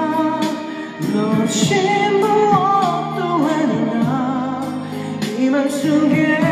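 A male voice singing a Korean pop ballad over a backing track, with wavering vibrato on the held notes.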